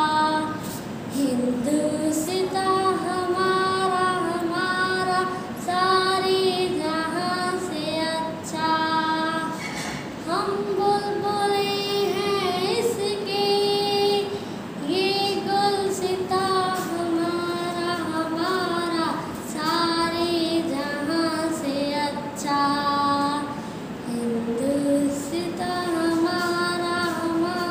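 A young girl singing a patriotic song solo, unaccompanied, in long held notes that glide between pitches.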